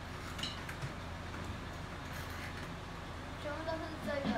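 Steady low room hum with a few faint taps, and a voice starting to speak near the end.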